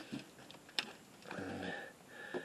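Fiberglass deck hatch panel being lifted off: a sharp click a little under a second in, then a faint rubbing sound.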